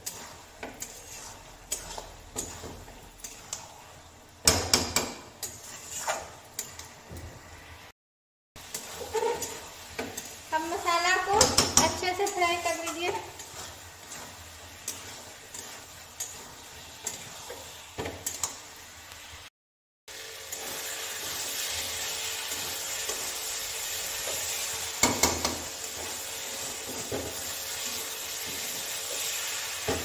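A steel spatula stirring and scraping chickpeas and potato pieces in an aluminium kadai, with repeated clinks and scrapes against the metal pan. In the last third comes a steady sizzle of masala frying, with an occasional knock of the spatula. A voice is heard briefly about ten seconds in.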